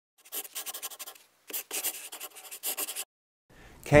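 Scratchy scribbling sound, like writing or rubbing on paper, in three bursts of quick strokes, the first about a second long and the next two shorter.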